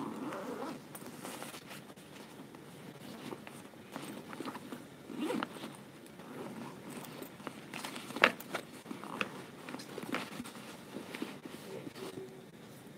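Quiet room ambience broken by scattered sharp clicks and rustles, the loudest about eight seconds in, with a faint murmur near the start.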